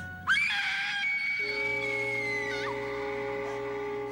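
A woman's high scream breaks in suddenly just after the start, rising in pitch, held for about two seconds and then falling away. Underneath it, sustained music chords move to a new, lower chord about a second and a half in.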